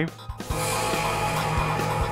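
Background score music comes in about half a second in: a dense, sustained texture of held tones over a run of low beats.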